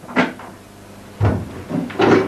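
Wooden cabinet being handled, with a sharp knock just after the start and a heavier bump a little past halfway, followed by a smaller knock.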